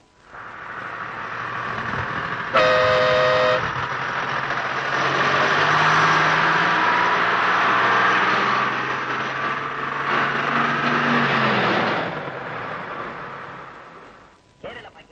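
Bus horn sounding once for about a second over a bus engine and street traffic noise, which build up and then fade away near the end.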